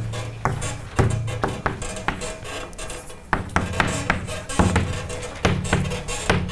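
Chalk writing on a blackboard: a run of irregular sharp taps and strokes, about two a second, each followed by a short low ring from the board.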